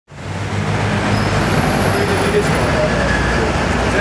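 City street traffic noise: a steady rumble of road vehicles with a low engine hum underneath, fading in at the very start.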